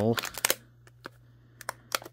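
A few short, sharp clicks and crackles from a thin plastic water bottle being handled: a quick cluster about half a second in, then a few single ticks.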